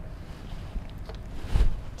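Low rumble of microphone handling and room noise from a person working at a whiteboard, with a few faint clicks and a soft thump about one and a half seconds in.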